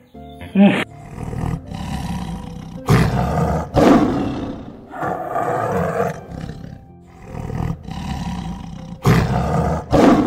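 Tiger roars and growls, several long calls, loudest about three to four seconds in and again near the end, over background music.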